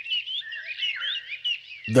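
Background birdsong: a continuous run of short, quick chirps at varying pitch.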